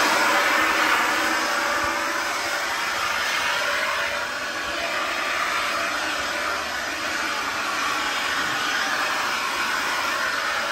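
Anykit 20V battery-powered electric leaf blower running steadily, its fan whirring and pushing a rushing blast of air.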